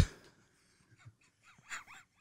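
Faint, high, wavering squeaks from a person's voice, a silly vocal impression of a musical instrument, coming briefly near the end.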